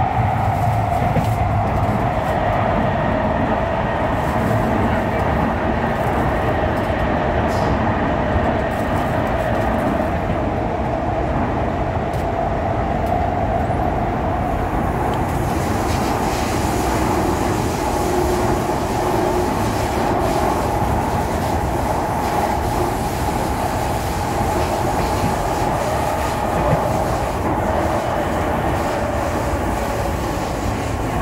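Kawasaki Heavy Industries C151 metro train running in the tunnel, heard from inside the car: a steady whine from the traction motors that sags slightly in pitch and climbs back, over the continuous rumble of the wheels on the track.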